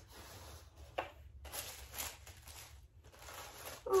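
Faint handling of a cardboard gift box and its tissue paper: soft rustling, with a light tap about a second in.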